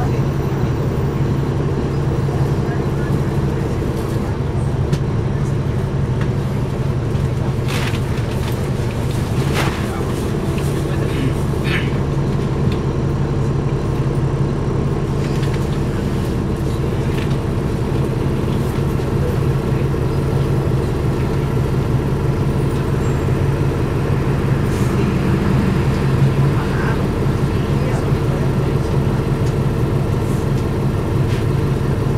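Interior of a 2009 NABI 416.15 transit bus standing still with its engine idling, heard from a seat near the back: a steady low drone with a hum above it. A few brief clicks and rattles come about eight to twelve seconds in.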